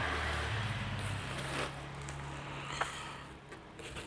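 Cardboard packaging and plastic wrapping rustling as parts are handled inside a box, with a few light clicks, over a steady low hum.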